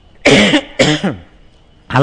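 A man coughing twice in quick succession, two short bursts about half a second apart.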